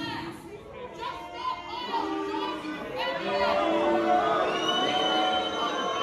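Theatre audience reacting: many voices shouting and calling out at once in a large, echoing hall, with some music or singing underneath.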